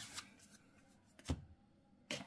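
Faint handling of Yu-Gi-Oh trading cards, with a couple of soft clicks and one short tap about a second and a quarter in.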